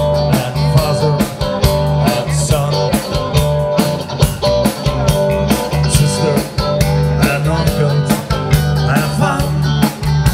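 Live rock band playing: electric guitar over bass guitar and a drum kit keeping a steady beat.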